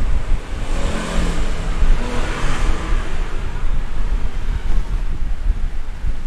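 Steady rumbling background noise with hiss, swelling slightly in the first half.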